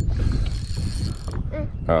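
Spinning fishing reel being wound while playing a hooked fish: a rapid mechanical clicking and whirring.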